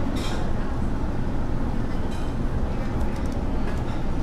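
Steady low rumble of restaurant table-grill extraction hoods, with a few light clinks of utensils.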